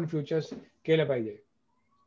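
A man's voice, two short stretches of speech, the second a drawn-out syllable falling in pitch, then a pause.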